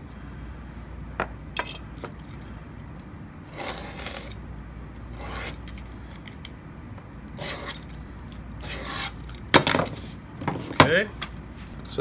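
A utility knife drawn about four times along a steel square, scraping as it cuts across thin wood veneer. Near the end come sharp clicks and clatter as metal tools are set down on the wooden bench.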